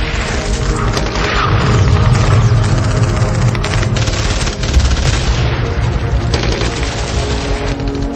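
Battle sound effects: gunfire, many shots in quick succession, with heavy low booms, mixed over music holding long notes.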